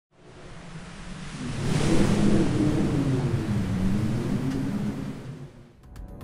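A produced intro swell: a rushing rumble with low wavering tones that bend in pitch. It fades in, peaks about two seconds in, and dies away just before the end.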